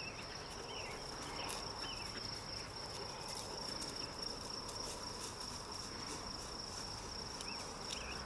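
Insects trilling steadily at one high pitch, with short chirps repeating about once a second beneath it.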